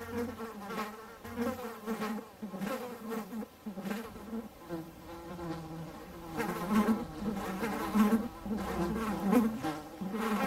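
Bumblebees buzzing, a wavering hum that swells and fades in pulses and grows louder in the second half.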